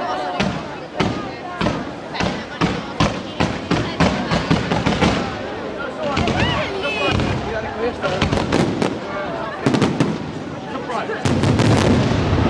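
Aerial fireworks display: a rapid run of sharp bangs and crackles from shells bursting overhead, several a second. The bangs grow louder and denser shortly before the end.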